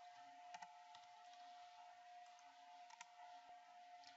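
Near silence: a faint steady hum of room or recording tone, with a few faint computer mouse clicks, about half a second in and again about three seconds in.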